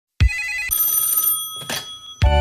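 Telephone ringing: a brief rapid trill of the bell, then a ringing tone that fades away, with a short noisy burst near the end.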